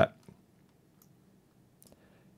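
A few faint, separate mouse clicks over quiet room tone, one shortly after the start and one near the end.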